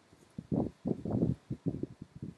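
Hand-sewing a button onto a coat: soft, irregular rustles and bumps as the coat fabric is handled and the needle and thread are worked through it.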